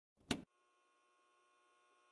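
A single short, sharp click near the start, then a very faint steady electrical hum with a few thin steady tones in it.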